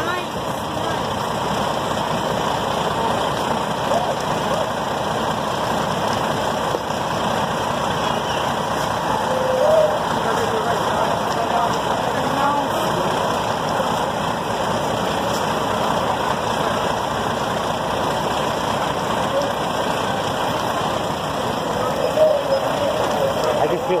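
Fire engine's engine running steadily close by, a constant even noise, with faint voices now and then.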